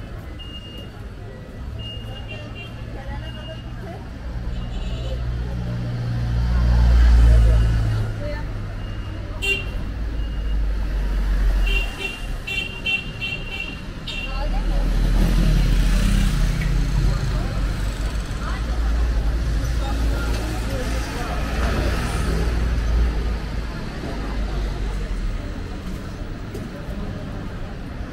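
Busy city street: motor vehicles and scooters running past, one passing close about seven seconds in and more from halfway on, with passers-by talking. Short high electronic beeps sound several times, in a quick run a little before halfway.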